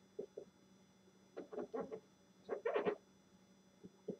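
Dry-erase marker squeaking on a whiteboard in short strokes while writing: two brief squeaks near the start, then two quick runs of strokes in the middle.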